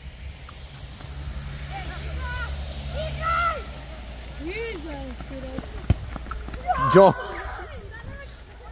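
Distant shouts of players on an outdoor futsal court over a low steady rumble, with a single sharp ball kick about six seconds in and a brief nearby voice near the end.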